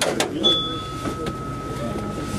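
Paris Métro train heard from the driver's cab as it runs slowly on the line, a low running rumble with a few clicks at the start. About half a second in, a steady high-pitched tone comes in and holds.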